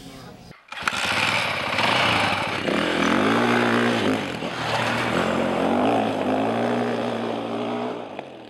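Dirt bike engine cutting in suddenly about half a second in and running loud, its revs rising and falling from about three seconds in.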